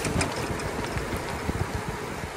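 Wind rushing over a handlebar-mounted microphone and tyre rumble from an e-bike rolling fast downhill on rough asphalt, with a few short knocks as it goes over bumps.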